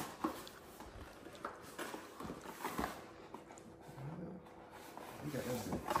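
Handling of a large stiff sheet from a dirt bike graphics kit: soft rustling and a few light taps and clicks as it is turned over, with low murmuring near the end.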